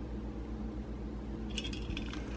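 Steady low hum of background room tone, with a few faint light clicks near the end.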